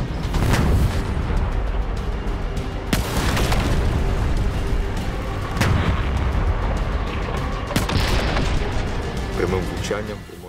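Leopard tank's main gun firing and shells exploding: several sharp blasts about two to three seconds apart over a continuous rumble, with background music.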